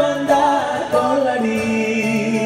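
Live unplugged music: male voices singing sustained, bending melody notes over an acoustic guitar.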